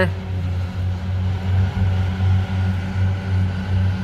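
Farm tractor's diesel engine running steadily under load as it drives a disc mower through grass, a low drone that swells and fades slightly.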